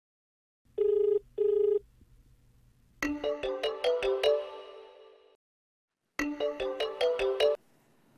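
Two short electronic beeps, then a mobile phone's melodic ringtone, a quick run of bright chiming notes, plays through twice. The second time it stops abruptly, as the call is answered.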